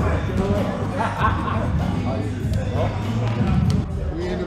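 Men talking and laughing over background music with a steady low bass.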